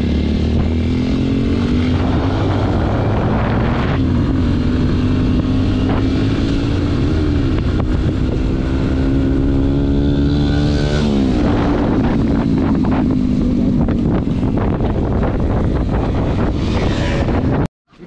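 Yamaha motorcycle's engine under way, its pitch climbing and then dropping sharply at gear changes about every three or four seconds, with wind rushing over the helmet microphone. The sound cuts off suddenly near the end.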